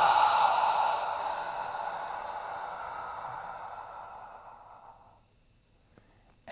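A man's long, slow exhale, fading away gradually over about five seconds. It is the long exhale of a physiological sigh, following a double inhale.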